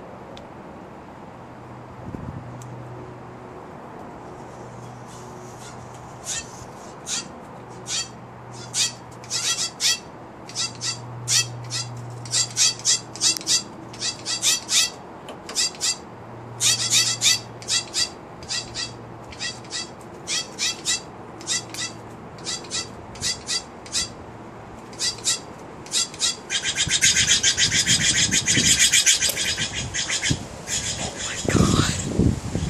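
Steller's jays giving harsh, rasping calls in quick series of short notes, again and again. Near the end a louder, unbroken burst of harsh noise lasts about three seconds as two jays fight in the air.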